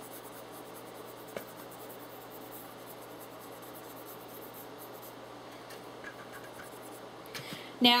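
Faint scratching of a brush working pastel dust onto a model horse, with a small tick about a second and a half in.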